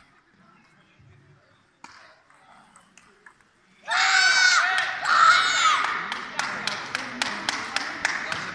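A quiet spell with a few faint taps, then about four seconds in, loud high-pitched shouting from young voices, followed by rhythmic clapping at about three claps a second.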